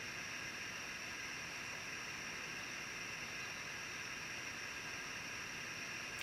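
Steady faint hiss of room tone, unchanging throughout, with no distinct sounds.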